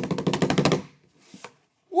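A drum roll of rapid, even strikes that stops abruptly just under a second in, followed by a faint short sound.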